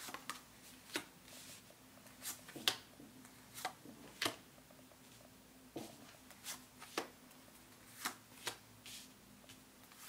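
Tarot cards being drawn off a deck and laid down one at a time on a cloth-covered table: short, irregular card snaps and slaps, roughly one or two a second.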